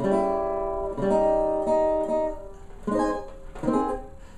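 A 12-inch-head custom OME tenor banjo strumming four chords, each left to ring. They are dominant seventh chords moving to their flat-5 and flat-9 altered forms, played in a cycle of fourths.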